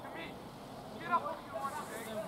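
Distant voices of people at a junior rugby league match calling out across the ground, with the loudest shout about a second in, over steady outdoor background noise.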